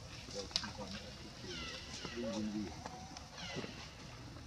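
Baby macaque giving two short, high, falling cries, the first about a second and a half in and the second near the end.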